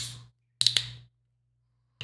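A plastic water bottle handled close to the microphone: a sharp crackle, then a quick cluster of clicks about half a second later as the cap is twisted open, and a softer crackle near the end.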